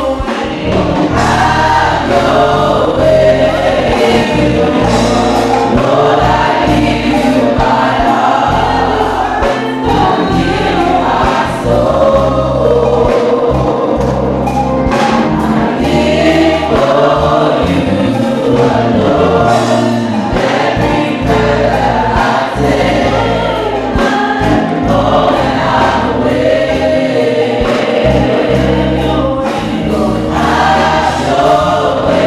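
Church choir singing a gospel hymn into microphones.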